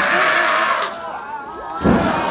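A crowd yelling loudly for the first second, then easing off. Near the end comes a single heavy thud of wrestlers' bodies slamming onto the ring mat.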